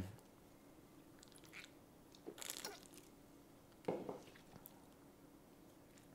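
Faint sounds of a man drinking from a drink can: two soft swallowing sounds, about two and a half and four seconds in, over a low hum.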